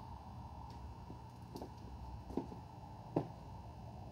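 Faint footsteps, a few soft ticks about a second apart, over a steady low background hum.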